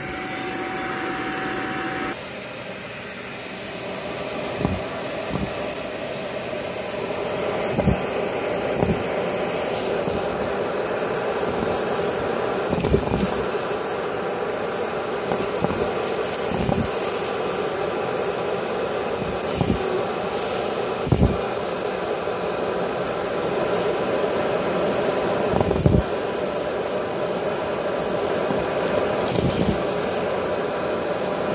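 Dyson vacuum cleaner running steadily as its bare wand sucks up lint, hair and small beads from carpet, with its note changing about two seconds in. Sharp knocks and clicks come every few seconds as debris is pulled into the wand.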